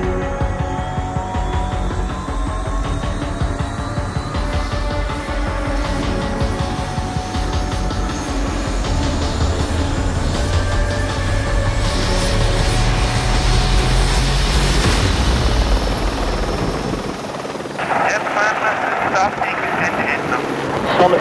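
Aircraft engine rumble that builds up and then drops away about 17 seconds in, with a soundtrack underneath. Near the end a voice comes over a radio link, counting down to the jetmen's release.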